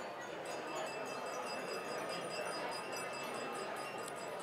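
Dinner-hall ambience: a low murmur of many diners with frequent light clinks of cutlery, plates and glasses.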